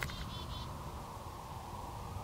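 Wind blowing across the microphone in the open, a steady low rush, with a few faint, short, high bird chirps in the first half second.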